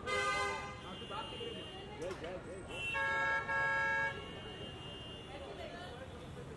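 Vehicle horns honking: a short honk at the start, then a longer honk about three seconds in, briefly broken in the middle, over steady background chatter.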